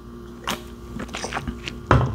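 Gulps of beer swallowed from a tall-boy aluminium can, close to the mic, with a sharper knock just before the end as the can is set back down.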